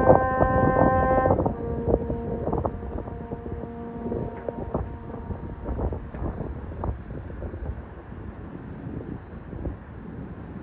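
Solo French horn holding the final long notes of the piece: one sustained note, then a slightly lower one about a second and a half in that fades away over the next few seconds. Under it runs a low outdoor background rumble that remains after the horn has died away.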